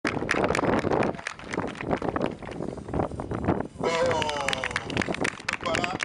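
Dense, irregular clicks and knocks, then a person's voice from about four seconds in.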